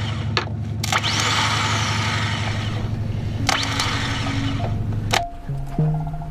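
Boat engine running with a steady low hum, broken by several sharp knocks and a loud rushing hiss about a second in. Music with held notes comes in near the end.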